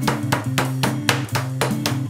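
Background music with a steady, quick beat over a stepping bass line.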